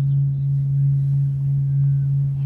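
Steady low electronic sine tone from an audiovisual entrainment performance, swelling and fading in a slow, regular pulse.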